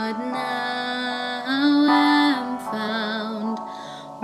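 A woman singing a hymn solo, holding each note for about a second, some with vibrato.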